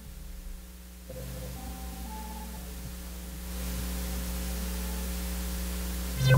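A quiet, held passage of electronic music: a steady low hum and drone with a few faint sustained tones, and a hiss that swells about three and a half seconds in.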